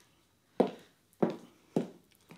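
Footsteps on a wooden studio floor: three sharp steps about half a second apart, the first the loudest.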